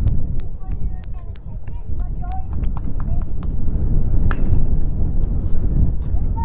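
Wind rumbling on the microphone with spectator voices in the background; about four seconds in, a sharp crack with a short ring as a bat hits a pitched baseball.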